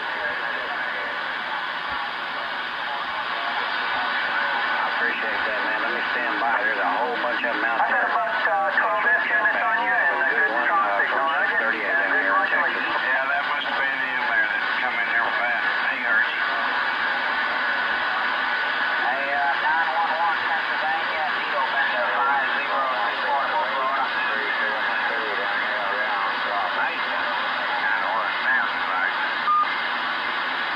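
Galaxy DX2517 CB radio receiving channel 38 lower sideband: several garbled, warbling sideband voices talking over one another through static, with a steady whistle under them. It is the sound of an overcrowded call channel where nobody can be understood.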